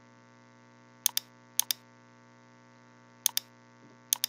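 Computer mouse clicks: three pairs of short, sharp clicks, about one, one and a half and three and a quarter seconds in, over a faint steady electrical hum.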